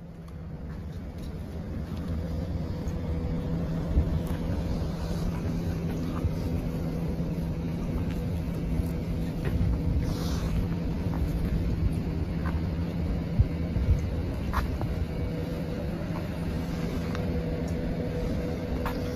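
Steady low vehicle rumble with a constant hum, fading in over the first couple of seconds, with a few faint knocks.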